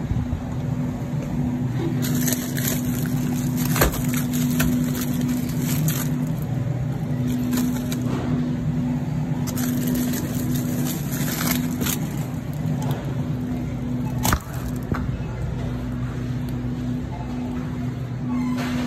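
Handling noise in a supermarket freezer aisle: rattling and clicking as a glass freezer door is worked and frozen pizzas are taken out and put into a wire shopping cart, with a sharp knock about four seconds in and another near fifteen seconds. A steady low hum runs underneath.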